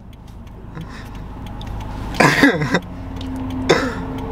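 Low road and engine rumble inside a moving car's cabin, growing slowly louder. A short burst of a man's voice, a throat-clear or chuckle, comes about two seconds in, and a briefer one comes near the end.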